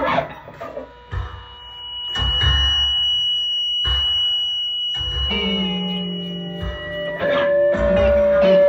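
Free-improvised live music with guitar playing. It drops quieter about a second in, then builds again with a long held high tone over the playing and a new held lower note near the end.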